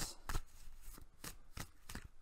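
A deck of tarot cards being shuffled by hand: a run of short card snaps, about three or four a second.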